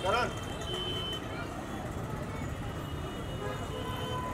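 Photographers' voices at a celebrity photo call: a short loud rising shout right at the start, then scattered overlapping chatter over a steady low background rumble.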